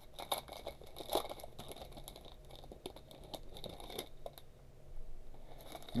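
Faint crinkling and tearing of a trading-card pack wrapper as it is opened by hand, with scattered short crackles over the first four seconds or so, then only light handling of the cards.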